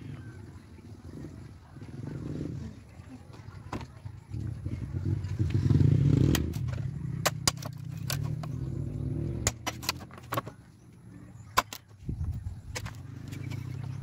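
A small hatchet chopping into a bamboo pole: sharp, irregular chops, a dozen or so, starting about six seconds in, over a low steady rumble.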